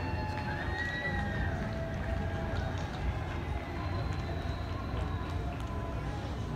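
Distant voices over a steady low rumble, with no single sound standing out.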